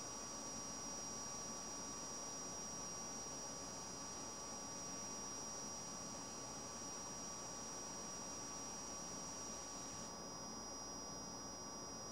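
Faint steady hiss with a constant high whine and mains hum, typical of a hot-air rework station blowing on a logic board while a chip's solder reflows. The higher part of the hiss drops a little about ten seconds in.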